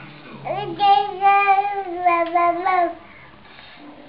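A toddler's wordless sing-song voice: a rising glide into one long held note that sinks a little in pitch, ending about three seconds in.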